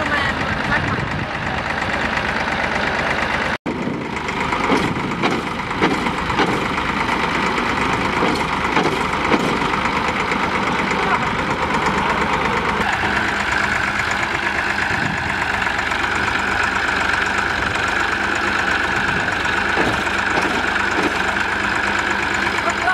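Diesel engine of a Massey Ferguson tractor running while the tractor is stuck in mud with a cultivator hitched behind. The engine note settles into a steadier, higher-pitched tone about halfway through, and there is a brief break in the sound a few seconds in.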